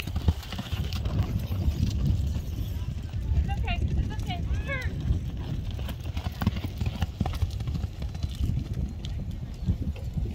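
A horse cantering on soft arena dirt, its hoofbeats over a steady low rumble. A few short, high, sweeping calls come around the middle.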